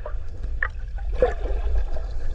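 Muffled water movement and gurgling from a camera held underwater, over a steady low rumble, with two short gurgles about half a second and a second and a quarter in.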